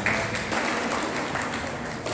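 Audience applauding: many hands clapping steadily, fading slightly toward the end.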